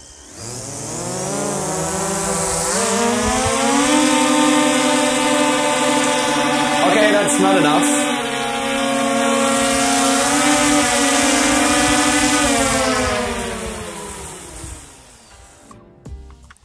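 DJI Mavic 2 Pro quadcopter's propellers spinning up with a rising whine, holding a steady pitch at hard effort with a brief wobble partway, then winding down and stopping near the end. The drone is straining against a tethered water jug of about 1.75 kg that is too heavy for it to lift.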